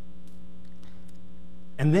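Steady electrical mains hum, a constant low buzz with a stack of overtones that does not change. A man's voice starts a word near the end.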